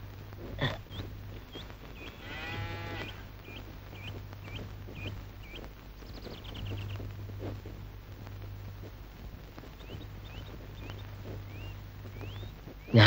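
Quiet rural film ambience: short high bird chirps repeating about twice a second, and a single bleating animal call about a second long, two seconds in. A low steady hum sits underneath.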